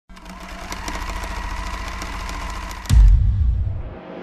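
Intro-sting sound design: a steady mechanical buzz with scattered sharp clicks, cut off about three seconds in by a sudden deep bass boom that fades away.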